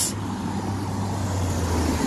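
Steady road traffic noise: a low rumble under an even hiss, with no rise or fall.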